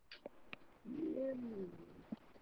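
A pigeon cooing once, a low call of about a second that rises and then falls in pitch. It comes after a few light taps of a stylus on a tablet screen.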